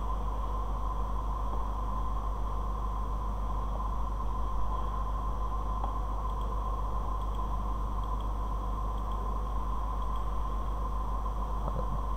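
Steady background hum and hiss with no distinct events, the constant noise floor of the recording.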